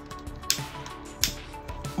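Background music with two sharp clicks under it, less than a second apart: the trigger of a barbecue-style utility lighter being clicked to light it.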